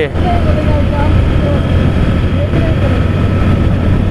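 Motorcycle engine running steadily under way, with a constant low hum and road and wind noise.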